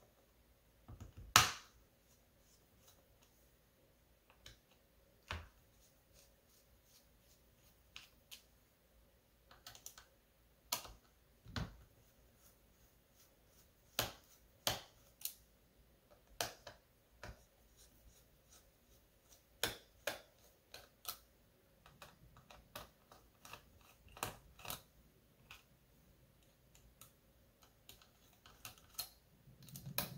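Irregular small clicks and taps of fingers handling plastic and metal parts inside an opened laptop chassis, the loudest about a second and a half in.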